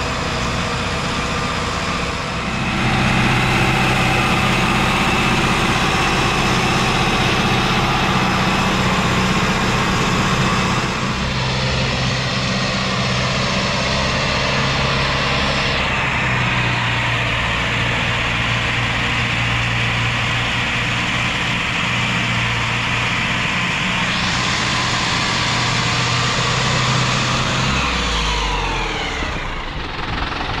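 Zetor Proxima tractor's diesel engine running steadily as it drives and tows a bundle of logs. The note gets louder a couple of seconds in and falls away near the end.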